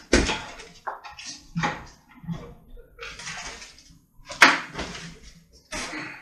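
Cardboard shipping boxes being cut open and handled: scattered rustling and scraping, a thump at the start and one sharp knock about four and a half seconds in.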